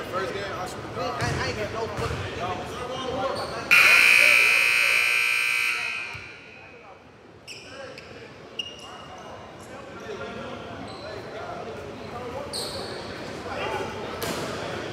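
Gymnasium scoreboard buzzer sounding loudly for about two seconds, starting abruptly about four seconds in, in a large echoing hall. Players' voices and a basketball bouncing on the hardwood are heard around it.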